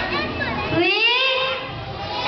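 A young girl's voice at a microphone, entering about a second in with long, gliding notes as she begins to sing, over a background of crowd chatter.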